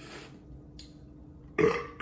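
A man belches loudly after downing a glass of beer. The belch starts suddenly about one and a half seconds in.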